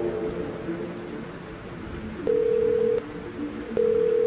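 Sparse passage of a trap-style instrumental beat: a single steady tone, like a dial tone, sounds twice, about two seconds in and again near the end, over a soft rain-like hiss.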